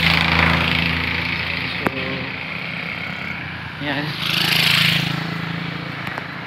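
Road traffic passing close by: a vehicle's engine and tyres are loud at first and fade away, and another vehicle swells past about four to five seconds in.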